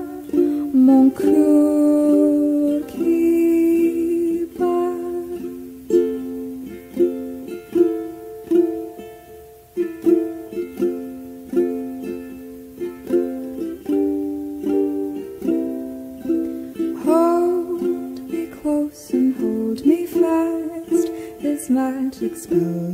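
Music: a song carried by plucked acoustic strings, with a voice sliding up into a sung phrase about two-thirds of the way through.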